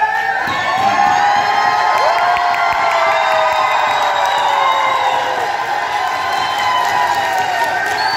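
A large crowd cheering and shouting all at once, with long drawn-out yells and some clapping, loud and steady throughout.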